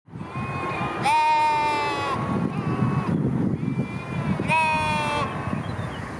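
Lambs bleating: a long, high bleat about a second in and another near the end, with fainter bleats between, over a steady low background rumble.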